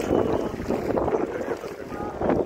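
Wind buffeting a phone's microphone, an irregular rough rumbling noise that rises and falls.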